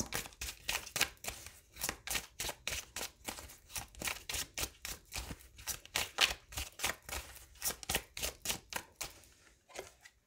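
A deck of tarot cards being shuffled by hand, the cards slapping and clicking against each other at about three to four a second, stopping about nine seconds in.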